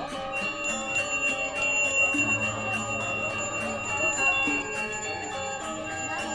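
Balinese gamelan playing, with fast, even strokes on bronze metallophones and sustained gong-like tones, for a Rejang temple dance. A high, steady bell ring sits over the ensemble from about half a second in until near the end.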